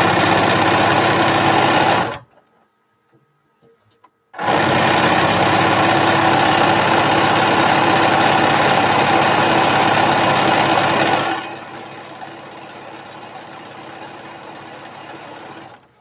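Bernina electric sewing machine stitching at a steady fast speed, sewing light and dark fabric strips together. It stops about two seconds in, starts again about two seconds later, and runs on until near the end, much quieter for the last few seconds.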